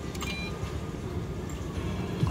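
Button press on an Alien-themed video slot machine, with a click and a short high electronic beep about a quarter second in, over a steady low background hum.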